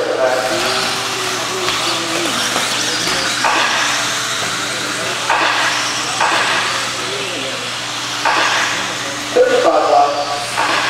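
Electric 17.5-turn brushless RC buggies racing on an indoor dirt track: motor whine that rises and falls in pitch, and several rushes of tyre and chassis noise as cars pass.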